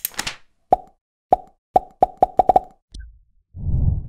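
Outro sound effects for an animated end card: a brief whoosh, then eight quick pitched plops that come faster and faster, then a low rumble and a deep whoosh near the end.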